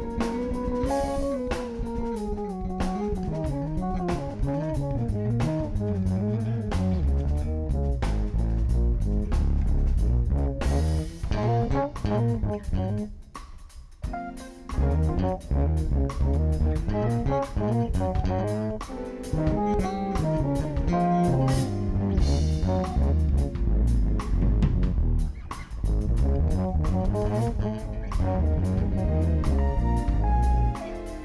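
Electric bass guitar soloing live with drum kit accompaniment: melodic runs first, then heavy deep low notes from about eight seconds in, with a brief drop around thirteen seconds.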